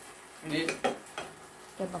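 A spatula knocking and scraping against a frying pan a few times as a stir-fry is stirred, with a sharp clack just over half a second in and two more soon after.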